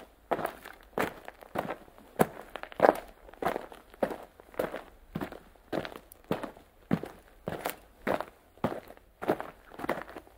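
Footsteps of a person walking at an even pace, about three steps every two seconds.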